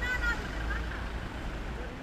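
Outdoor ambience with a low, steady traffic rumble.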